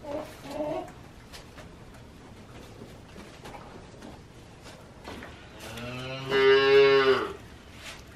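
A cow mooing once: a single long, low call of about a second and a half, starting a little under six seconds in.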